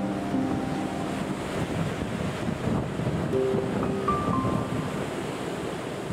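Sea waves washing as a steady rushing noise, with a few soft, sparse music notes held faintly in the background.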